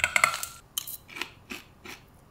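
A metal spoon scraping and clinking in a stainless steel bowl, then a few sparse crisp crunches as a mouthful of puffed forbidden rice and nori furikake is chewed.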